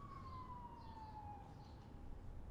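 A faint siren, its single wailing tone sliding slowly down in pitch, over a low outdoor rumble.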